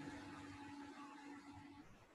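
Near silence: faint room noise with a faint steady hum that stops shortly before the end, when the sound drops to dead silence.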